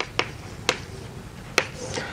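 Chalk striking a chalkboard during writing: four sharp, irregularly spaced clicks, followed by faint scratching near the end.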